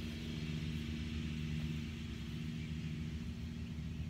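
Steady low mechanical hum of a distant engine, a drone with a couple of held tones, one of which fades out about halfway through.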